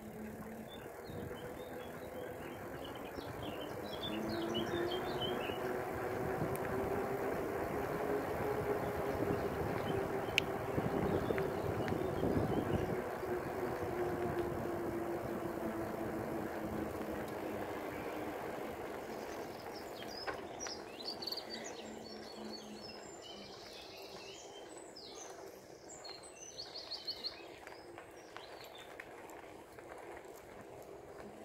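Bicycle rolling along a tarmac path, with the rushing of tyres and wind on the microphone building to its loudest around the middle and easing off later. Birds chirp early on and again in the last third.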